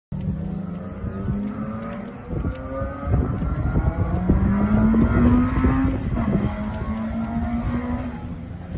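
Rally car engine accelerating hard: its pitch climbs steadily, is loudest about five seconds in, and drops at a gearchange around six seconds, with scattered sharp crackles throughout.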